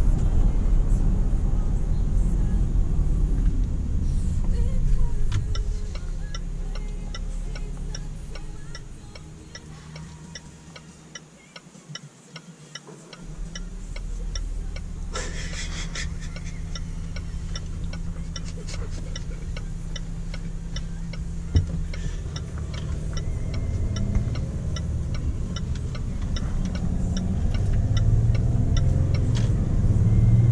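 Cabin sound of a Range Rover Sport's 3.0 diesel V6 and its tyres, with a steady ticking from the turn indicator. The engine and road noise fade as the SUV slows for a left turn. The low hum drops away for about two seconds near the middle, comes back sharply, and the noise builds again as it pulls away.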